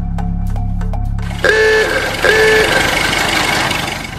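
Background music with a quick, steady beat, then about a second and a half in it cuts to street traffic noise, with a vehicle horn honking twice.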